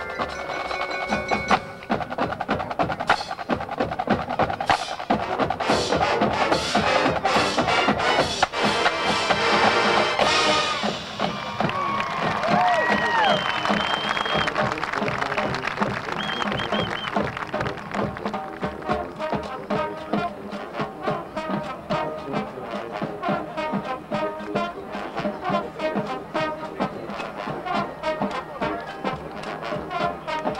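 Marching band playing a field show: a percussion section drives the music with dense, quick strikes, with brass playing alongside, settling into a steady rhythm in the second half.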